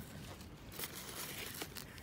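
Faint rustling and a few light clicks of a pizza slice being pulled from its cardboard pizza box.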